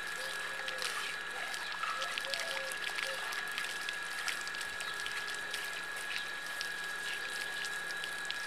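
Water from a garden hose running over a cow's hide and splashing onto wet ground, a steady hiss with many small splashes, as the cow is washed by hand.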